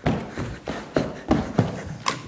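Running footsteps on a carpeted floor: heavy, even strides at about three a second.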